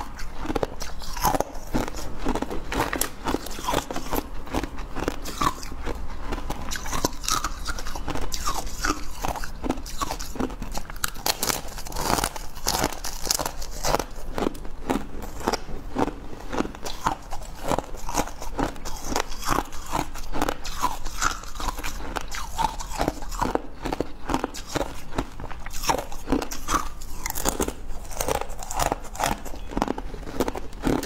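Freezer frost being bitten and chewed, close-miked: a continuous run of soft, crackly crunches, several a second.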